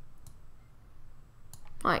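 A few faint clicks of a computer mouse over quiet room hiss, followed near the end by a man's voice starting to speak.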